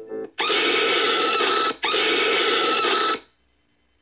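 Loud, harsh jumpscare screech sound effect: two long blasts of about a second and a half each, split by a brief gap, cutting off suddenly into near silence. Quiet organ music fades out just as it starts.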